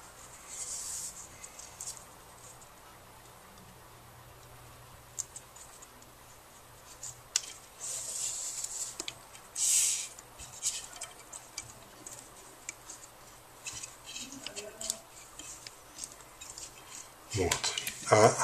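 Nylon paracord being pushed through a braided bracelet and pulled tight by hand. Short swishes of cord sliding through the weave come about a second in, near 8 s and near 10 s, with light rubbing and small clicks in between.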